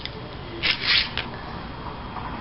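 Paper sticker sheet rustling as it is handled: two short rustles a little over half a second in, then a light tick.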